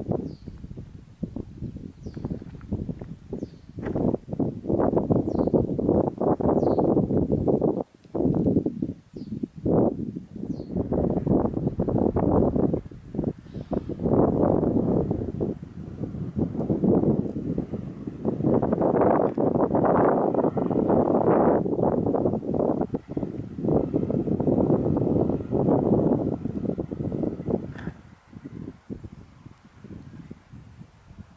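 Wind buffeting the camera's microphone: a gusty low rumble that rises and falls, dropping out briefly about eight seconds in and easing near the end.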